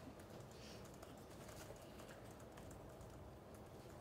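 Near silence: room tone with faint, scattered clicks of typing on a laptop keyboard.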